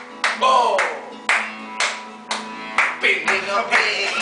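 Hands clapping a steady beat, about two claps a second, over acoustic guitar and men's voices singing and calling out.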